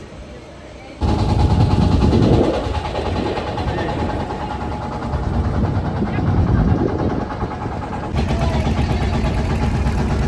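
Engine of a wooden lake boat running steadily while it is underway, with people talking over it. The engine starts suddenly about a second in.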